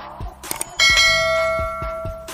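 A click, then a notification-bell ding sound effect that rings out and slowly fades, over a faint background music beat.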